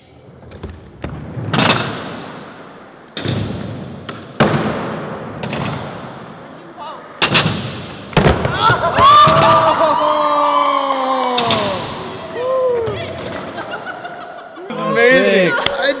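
Two skateboards rolling on a concrete bank, with several sharp board clacks as the fakie shove-its are popped and landed, each echoing in the big hall. From about halfway, loud whooping cheers that fall in pitch, and laughter near the end.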